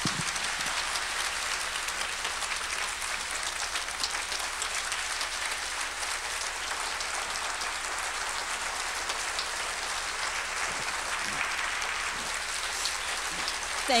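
Audience applauding steadily for about fourteen seconds, sustained clapping from a large crowd in a hall.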